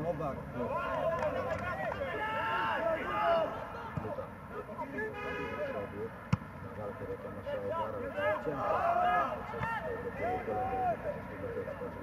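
Shouts and calls of several men across an open football pitch during play, with no commentary over them. A single sharp knock comes about six seconds in.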